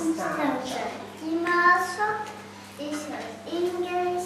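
Young children's voices singing a song in short phrases with held notes.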